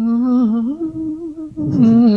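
A man humming a held, gently wavering tune in two phrases, a vocal imitation of a male fruit fly's courtship song when its wing vibrates at just the right speed.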